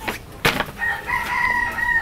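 A rooster crowing once in the background: one long held call over the last second or so. A short sharp knock comes about half a second in.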